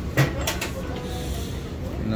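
Coffee-shop counter background noise: a steady low hum and faint distant voices, with two sharp knocks close together in the first half-second.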